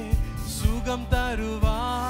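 A man singing a Tamil Christian worship song into a microphone over instrumental accompaniment, with a steady beat of about two thumps a second.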